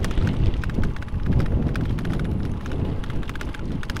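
Wind buffeting the microphone of a cyclist riding at about 20 mph, over a steady rumble and a dense patter of small clicks from the bike's tyres crunching along a gravel path.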